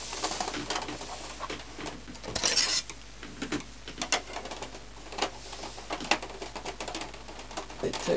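Handling noise from a plastic inkjet printer casing: a brief scrape about two and a half seconds in, then scattered light clicks and knocks as a table knife is worked in behind the printer's plastic side panel.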